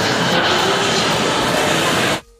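Loud, steady wash of noise picked up by a handheld phone microphone in a shopping mall: indoor mall ambience mixed with rumble from the moving phone, with faint voices or music under it.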